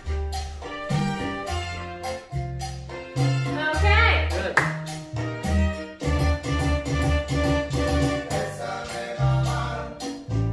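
Latin cha-cha dance music playing with a steady beat and bass line, and a singing voice that glides up and down about four seconds in.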